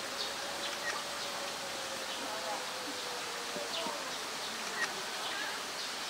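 An insect buzzing with a steady, slightly wavering tone, with short bird chirps scattered through.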